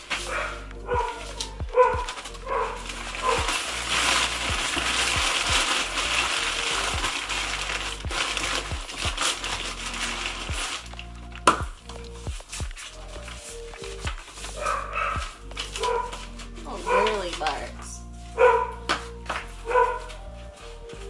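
Background music with a beat runs throughout. For several seconds in the first half, brown kraft packing paper crinkles loudly as it is handled.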